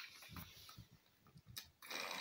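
Near silence: faint, soft handling knocks, then one brief click about one and a half seconds in.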